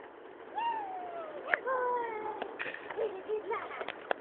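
German Shorthaired Pointer whining: two long falling whines, then a few shorter, lower whimpers, with a few sharp clicks between them.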